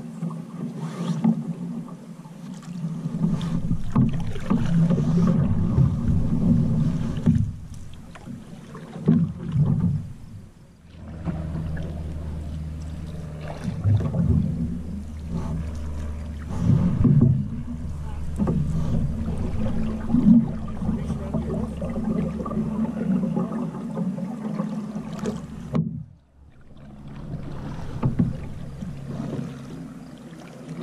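A solo canoe being paddled: paddle strokes in the water and water moving along the wooden hull, with the odd knock, picked up by a camera fixed to the canoe, unevenly loud with brief lulls.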